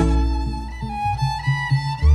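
Keroncong ensemble playing: a violin carries a melodic phrase of held notes that step up and down, over low bass notes, while the steady rhythmic strumming drops back.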